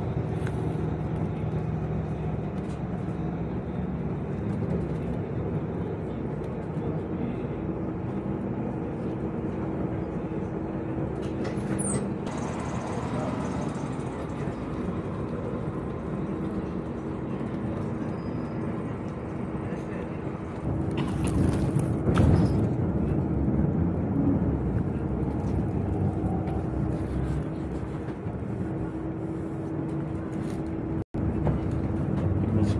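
Steady engine and road noise of a moving city bus heard from inside the passenger cabin, a low hum with a hiss over it. It grows louder for a few seconds about two-thirds of the way through.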